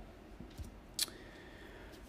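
A single sharp click, a key or presenter-remote button pressed to advance a slide, about halfway through a quiet stretch. A faint steady high tone follows.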